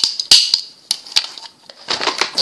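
Sharp plastic clicks from toy cap guns being handled, several in the first second and a half, with no caps loaded yet, so there is no bang.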